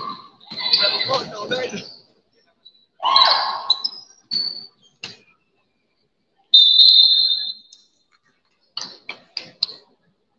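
Basketball game sounds in a gym: shouting voices early on and short high squeaks, then a single referee's whistle blast a little past halfway that lasts over a second, followed by a few sharp knocks near the end.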